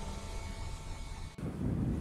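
Faint steady hiss that changes abruptly about one and a half seconds in to a low wind-like rumble, the ambient bed of a ship-deck scene.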